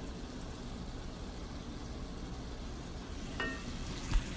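Food frying in a pan, a faint steady sizzle.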